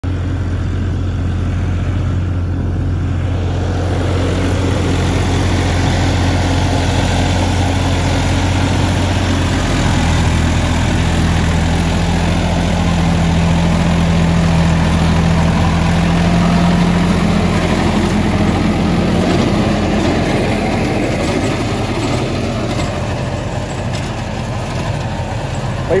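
John Deere 5310 tractor's diesel engine running steadily under load at about 1700 rpm in A1 gear, pulling a superseeder working the soil. Its pitch shifts slightly about ten seconds in.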